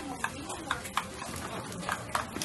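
Metal spoon clinking against a stainless steel mixing bowl in a few irregular sharp clicks as okonomiyaki batter is stirred, over a steady restaurant background with faint voices.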